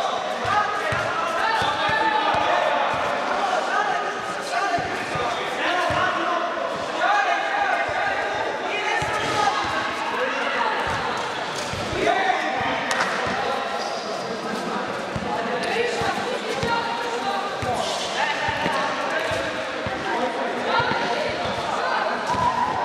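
A basketball bouncing and thudding on an indoor court, with repeated short impacts through a streetball game, amid players' voices and shouts in a large reverberant hall.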